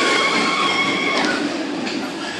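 Gerstlauer Euro-Fighter roller coaster train passing close by, its wheels running loudly on the steel track with a steady high whine that eases off after about a second and a half.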